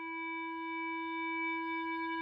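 A single sustained instrumental tone held at one pitch with bright overtones, swelling in and then holding steady as the song's opening drone.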